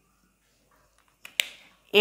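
Marker pen on a whiteboard: after about a second of near quiet, two sharp taps come close together, and the second runs into a short stroke that fades within half a second.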